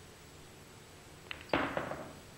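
Pool cue tip striking the cue ball with a light click a little past one second in, followed a moment later by a louder, sharp clack of billiard balls colliding and a brief rattle as the balls come down on the bottle tops and table.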